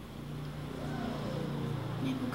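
A woman's soft voice rising and falling, starting about half a second in, over a steady low hum.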